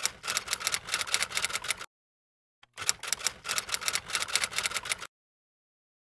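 Typewriter keystroke sound effect: quick key clicks, about eight or nine a second, in two runs of roughly two seconds each with a short silent gap between, cutting off abruptly before the end.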